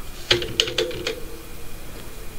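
Computer keyboard keys clicking: about five quick keystrokes in the first second, as a short line of code is deleted.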